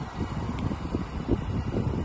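Wind buffeting the phone's microphone: uneven low noise that flutters irregularly.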